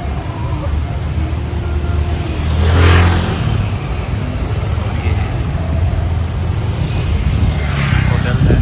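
Road traffic: cars and motor scooters running past close by in a steady low rumble. One vehicle passes loudest about three seconds in, and another swells up near the end.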